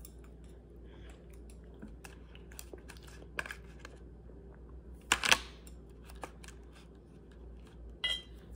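Small clear plastic cup and its snap-on lid handled while a plastic chopstick pokes inside to get a gummy candy out: scattered light clicks and taps, with a louder plastic crackle about five seconds in.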